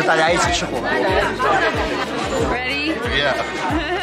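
People talking and chattering in a large hall, over background music with a steady beat.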